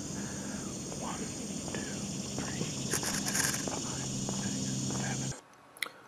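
Faint, indistinct talking outdoors over a steady, faint high-pitched hum, cutting off abruptly to near silence a little past five seconds in.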